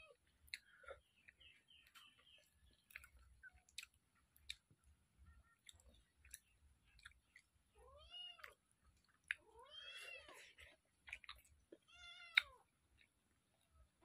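A cat meowing three times, about two seconds apart, each call rising and then falling in pitch. Between the calls there are faint clicks and chewing from someone eating by hand off a steel plate.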